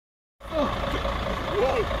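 Low steady rumble of an idling truck engine, beginning about half a second in, with people's voices talking in the background.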